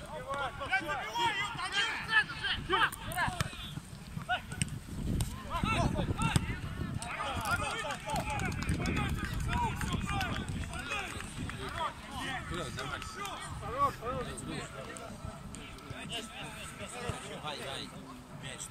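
Several players' voices shouting and calling to one another during a football match, with running footsteps on the pitch beneath them.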